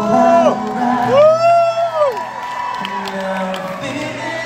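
Acoustic guitar holding slow minor-key chords while an audience member whoops twice: a short falling cry at the start, then a louder, longer rising-and-falling 'woo' about a second in, over some crowd cheering.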